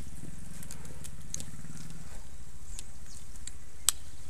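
Trials motorcycle engine idling with a steady low hum. A sharp click comes just before the end.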